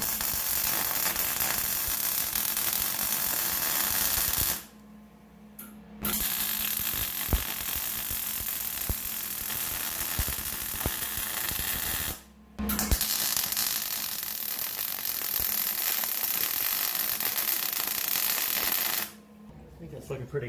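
Wire-feed welder's arc running on a steel steering shaft in three long welds of about five to six seconds each, with short breaks about four and a half and twelve seconds in, the welder turned up to get heat into thick metal.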